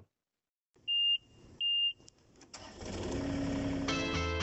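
Two short, high electronic beeps, then a click and a rising swell of noise with a low steady hum underneath, leading into outro music: a sound-effect sting at the start of a logo outro.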